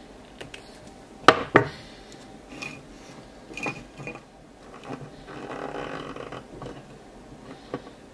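Wire strippers stripping a thin wire, two sharp snaps about a second in. After them come lighter clicks and a stretch of soft rustling as the wire and the relay are handled.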